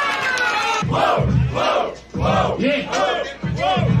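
Rap battle audience shouting and chanting together, a loud rising-and-falling crowd call repeated about twice a second.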